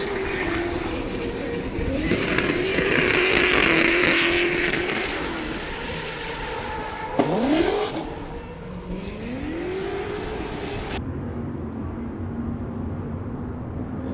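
Supercharged LS V8 in a BMW E30 drift car revving up and down through a drift, with tyre squeal and rushing noise loudest a few seconds in. There is a sharp rev rise about halfway through and another shortly after, and then the sound turns duller and quieter for the last few seconds.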